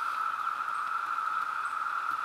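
Chorus of Brood II periodical (17-year) cicadas: a steady, high-pitched ringing from many insects, resonating all around and held at one pitch.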